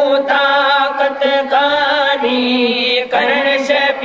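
Male voices singing a Sindhi naat, a devotional song in praise of the Prophet, in long held notes with wavering ornaments.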